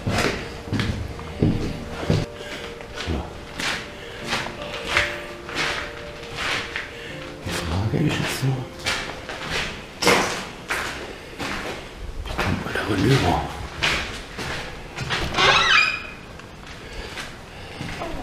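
Footsteps climbing old wooden stairs and crossing a littered floor, a steady run of knocks about two a second, over quiet background music.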